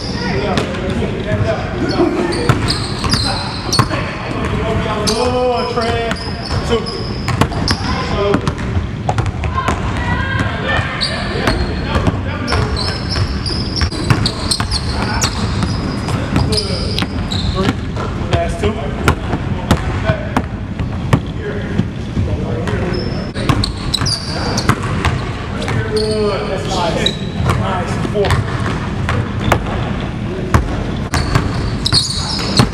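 A basketball dribbled on a hardwood gym floor, with many sharp bounces throughout, mixed with short high sneaker squeaks from players moving on the court.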